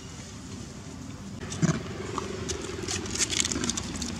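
Footsteps crunching on dry leaves scattered over dirt ground, a rapid crackling that starts after a single knock about halfway through. A low steady hum runs underneath.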